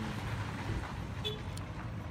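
Outdoor background noise: a low, uneven rumble of the kind wind or distant traffic makes on a phone microphone.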